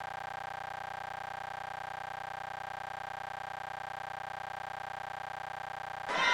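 A steady electronic tone, unchanging in pitch and level, with a fainter overtone about an octave above it.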